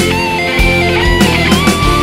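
Hard rock (AOR) song playing: electric guitar over drums with a steady beat.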